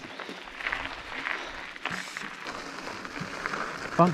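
Mountain bike tyres rolling over loose gravel: a steady crunchy hiss with a few sharp clicks and rattles from the bike.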